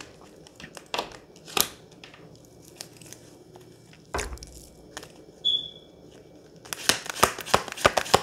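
A deck of tarot cards being shuffled by hand, with scattered papery clicks and flicks of the cards, a few louder snaps, then a fast, dense run of card flicks in the last second or so.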